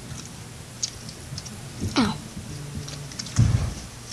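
Handling noise: scattered light clicks and rustles, with a short sound falling in pitch about two seconds in and a low thump near the end.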